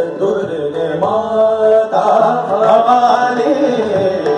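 Male Hindustani classical vocalist singing long, held and ornamented notes of Raag Durga, the pitch wavering and gliding between notes, over a steady drone.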